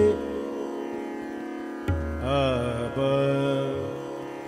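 Hindustani classical music in Raag Bhupali. Steady sustained drone tones run throughout. A deep drum stroke about two seconds in is followed by a short melodic phrase that glides up and down in pitch.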